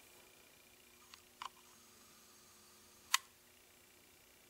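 Quiet room tone with two faint small clicks about a second in and one sharper click about three seconds in.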